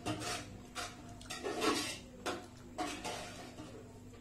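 Fingers mixing and scooping biriyani rice on a plate, making several short scrapes and rustles against the plate over a faint steady hum.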